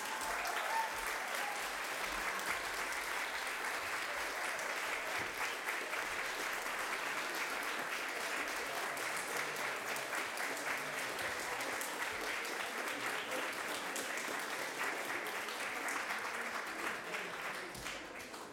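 Audience applauding: dense, steady clapping that holds its level and then dies away near the end.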